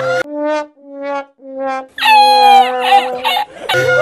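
Sad trombone sound effect: three short brass notes, each a touch lower, then a longer note that wavers and sags, the comic 'wah-wah-wah-waah' of failure. A backing music track with a bass line comes back in near the end.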